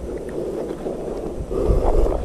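Wind buffeting the phone's microphone: an uneven, rumbling rush with no clear tone.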